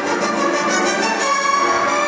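Orchestral show music with the strings to the fore, playing held notes at a steady level.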